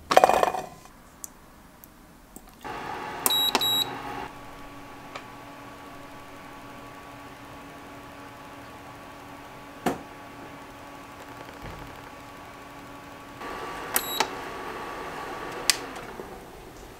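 Short electronic beeps from a kitchen appliance, one set about three seconds in and another near the end, over a steady electrical hum. A single loud knock comes just at the start.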